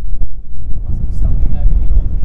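Heavy, uneven low rumble of wind buffeting the microphone, with indistinct voices talking quietly in the second half.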